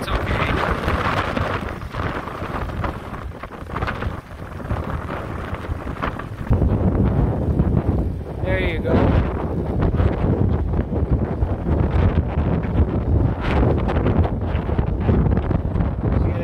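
Wind buffeting the microphone, much heavier from about six seconds in, over the running diesel engine of a Kubota compact tractor driving slowly away at low speed.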